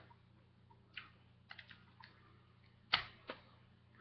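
Scattered light clicks and taps from hands handling rubber bands, with two sharper clicks about three seconds in.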